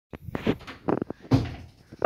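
A quick run of knocks and thumps, about six in two seconds, like wooden furniture being bumped.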